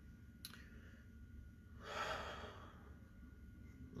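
A man with a head cold sighing, one soft breath out about two seconds in, after a faint click half a second in.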